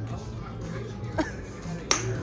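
Golf club striking a ball off the tee: one sharp crack near the end, with a fainter knock about a second in, over background music.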